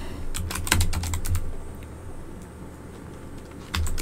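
Computer keyboard typing: a quick run of keystrokes, a pause of about two seconds, then more keys near the end as a search is typed in.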